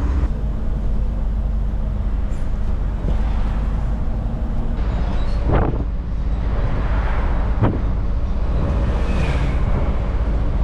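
Inside a moving bus: engine and road noise as a loud, steady low rumble, with two sharp knocks or rattles of the bus body, at about five and a half and seven and a half seconds.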